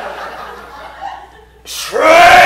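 Audience chuckling and laughing in a theatre between shouted lines. Near the end a man's loud shout starts.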